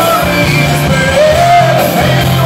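Live pop-rock band playing, with a lead vocal singing a melody over electric guitar and band, heard from within the audience in a large hall.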